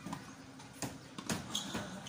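Tennis ball being struck by rackets and bouncing on a hard court: two sharp knocks about half a second apart, a little under a second in.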